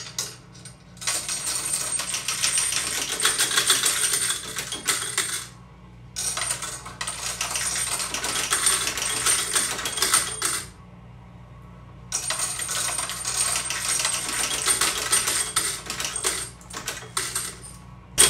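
Electric coin counting machine running coins through to count them, a dense rapid rattle of metal coins with a thin steady high whine. It runs three times, each run a few seconds long, with short pauses between.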